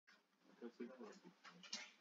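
Near silence: room tone, with a few faint, brief pitched sounds in the second half.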